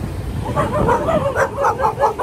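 Dog barking, a quick run of short barks, about five a second, starting about half a second in.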